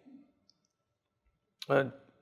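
Near silence in a pause between phrases of a man's talk into a lapel microphone, then a sharp click and a short spoken syllable near the end.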